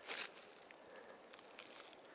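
A short rustle at the very start, then only faint scattered ticks and crackles at a low level.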